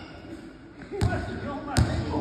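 A basketball bouncing twice on a hard gym floor, about a second in and again near the end.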